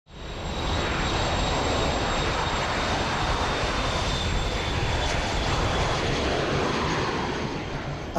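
Aircraft engine noise: a steady rush with a faint thin high whine, fading in over the first second and easing slightly near the end.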